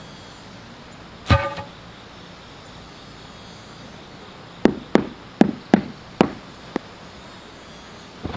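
A single hollow knock with a brief ringing tone about a second in, then a quick run of six sharp hammer knocks on a wooden formwork board over about two seconds.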